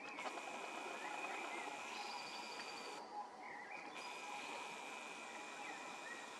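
Faint outdoor ambience of a rural field: birds calling with a few short chirps over a steady high-pitched tone and a low background hiss.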